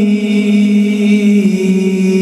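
A man's voice in melodic Quran recitation (tilawat), holding one long vowel on a steady pitch that steps slightly lower about one and a half seconds in.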